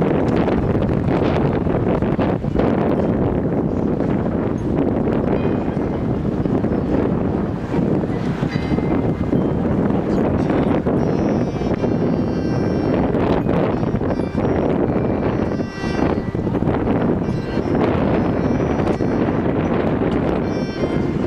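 A marching band and its front-ensemble percussion playing on the field, largely covered by wind buffeting the microphone; the band's instruments come through more clearly in the second half.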